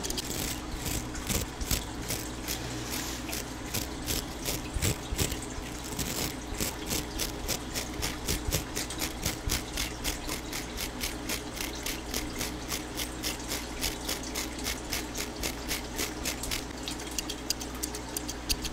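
Rapid light clicks and snips close to a microphone, made by scissors and a small hand-held object worked right in front of it. They come irregularly at first, then settle into an even run of about four a second. A few soft handling thumps fall in the first five seconds.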